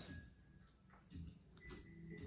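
Near silence: room tone with a few faint, brief soft sounds.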